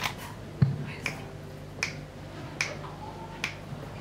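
Finger snaps, about one every 0.8 s, keeping a slow even beat just before the guitars come in, with a single low thump about half a second in.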